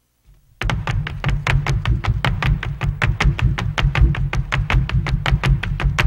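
Two dancers' hard-soled shoes striking a stage floor in zapateado footwork: a fast, even run of sharp strikes, about five or six a second, each with a low thud beneath it, starting about half a second in and stopping abruptly at the end.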